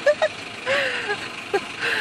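Steady car-cabin noise from riding in a moving car, with short voice fragments and breathy laughter over it.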